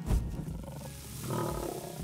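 Gorilla roar sound effect over a brand logo intro. It starts suddenly, runs rough and noisy for about two seconds and swells near the middle.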